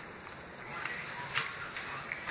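Footsteps and handheld-camera handling noise as someone walks across a shop floor: faint soft knocks and rustle, with one sharper click about a second and a half in.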